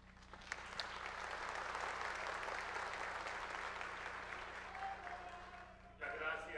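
Audience applauding: the clapping builds up over the first second or so, holds, and then dies away toward the end.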